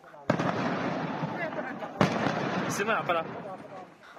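On-scene sound of a large building fire at night: a dense, noisy crackling rush, with a sharp crack about two seconds in and faint shouting voices.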